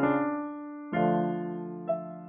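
Electronic keyboard played in a piano voice, slow and sustained: a chord rings on and fades, a new chord is struck about a second in, and a single note sounds near the end.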